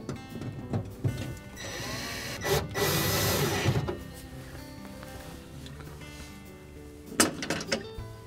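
Background music, with a noisy whir lasting about two seconds as a nut driver drives a screw into the freezer's evaporator cover. A couple of sharp knocks near the end.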